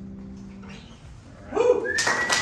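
The last electric guitar note rings out and fades away at the end of a song; then, about one and a half seconds in, the audience breaks into sudden whoops and a high whistle as clapping begins.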